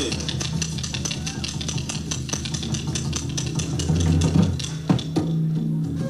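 Instrumental break in Tripuri folk dance music: quick, steady percussion over a sustained low bass line, with no singing.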